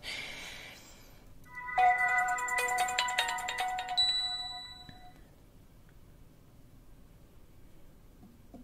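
Samsung Galaxy smartphone playing its boot-up chime as it starts: a short bright jingle of several ringing tones, starting about two seconds in and dying away by about five seconds.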